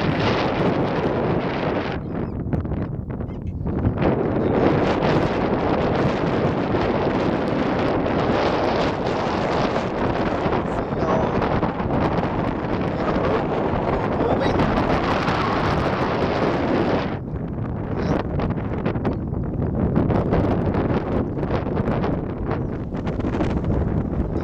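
Strong, cold wind ahead of an approaching storm buffeting the microphone: a loud, steady rush that eases briefly about two to four seconds in and again about seventeen seconds in.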